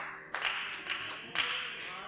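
Rhythmic hand clapping, about three sharp claps a second, over faint held piano notes.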